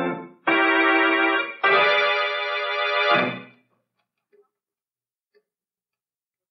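Organ music bridge between scenes of a radio drama: a held chord ends, then two more held chords, the second fading out about three and a half seconds in.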